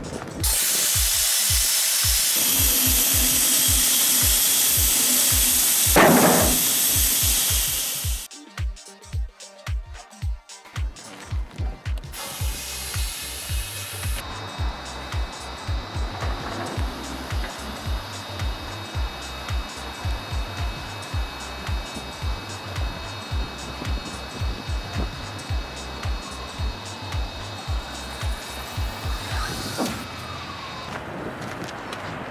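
Background music with a steady beat throughout. For the first eight seconds there is a loud steady hiss of compressed air from the trailer's air-ramp system as the ramps are lowered; it cuts off suddenly, and a shorter hiss follows about twelve seconds in.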